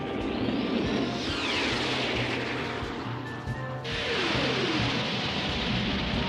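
Cartoon spaceship flight sound effects over background music: a steady jet-like rush with a falling whoosh, which cuts abruptly to a fresh rush and another falling whoosh about four seconds in.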